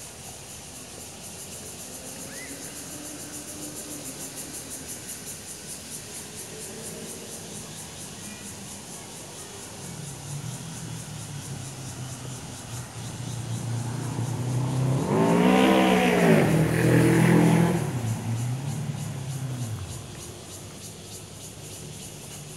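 Engine of a motor vehicle passing on the road: its hum builds over several seconds, is loudest for about three seconds with its pitch rising and falling, then fades away.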